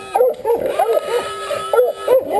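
Hog-hunting dogs barking rapidly at a caught wild hog, several short barks a second. A thin, steady high whine is held through the middle.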